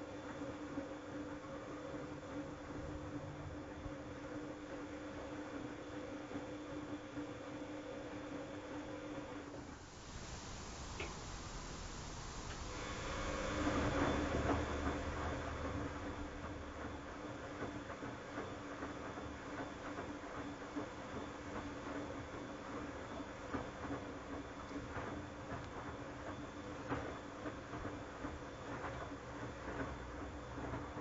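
Bosch Logixx WFT2800 washer dryer in its main wash: the drum motor hums steadily while the load tumbles. About ten seconds in the hum stops, then builds back up louder as the drum turns again, with the wet laundry tumbling and light clicks.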